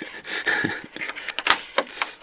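A bunch of keys on a keyring jangling while a key is worked in the lock of old wooden louvered shutters, with a series of short metallic clicks, a sharper click about a second and a half in, and a bright jingle at the end.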